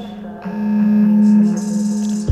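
Electronic music: a steady synthesizer drone of several held tones, swelling louder about half a second in.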